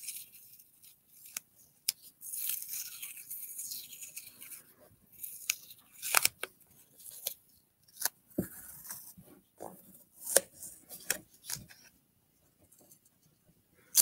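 Old Scott masking tape being peeled off the roll in short pulls and torn into pieces, with rasping unrolls and scattered sharp snaps and taps. The old tape tears apart and sticks to itself.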